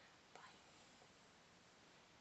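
Near silence: room tone, with one faint short sound about a third of a second in.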